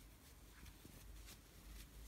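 Near silence, with a few faint, soft ticks and rustles of a metal crochet hook pulling yarn through stitches.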